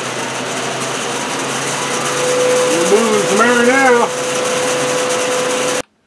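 AC Infinity Airlift T16 shutter exhaust fan running with its automatic shutters open, a steady rushing whir over a low hum. A steady higher tone joins about two seconds in, and the sound cuts off suddenly near the end.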